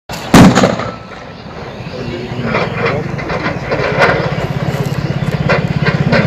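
A recovered crude bomb detonated by a bomb disposal team: one sharp, very loud blast with a rumbling echo that fades over about a second. A low pulsing drone and voices follow.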